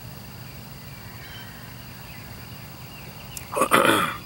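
A man clears his throat loudly near the end, over a steady high-pitched insect drone and low outdoor background noise.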